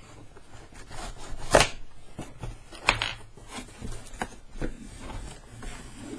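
Cardboard box being handled and opened by hand: cardboard rubbing and scraping, with sharp knocks or tears about one and a half and three seconds in, the first the loudest.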